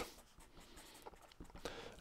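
Felt-tip marker writing on paper: faint scratchy strokes, with a few short ones in the second half.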